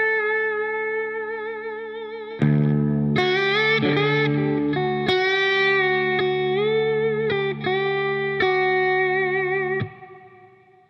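Electric lap steel guitar played with a slide through an amp: a low string rings underneath while a slow melody of single slid notes with vibrato moves around the fifth of the scale above it. The low string is struck again about two and a half seconds in, and the strings are damped just before the end.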